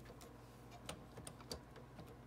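A few faint plastic clicks and ticks as a blade in its adapter is unclamped and drawn out of the Silhouette Cameo 4's tool holder.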